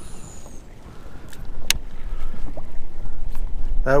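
Wind buffeting the microphone, a low rumble that grows louder over the last two seconds, with a few faint sharp clicks.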